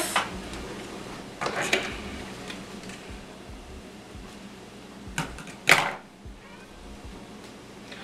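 Faint steady hiss of shrimp cooking in oil in a skillet, broken by a few short handling noises of a small packet, about one and a half, five and six seconds in.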